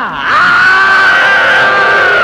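A long, drawn-out scream from a person falling, held at one pitch and dropping slightly near the end.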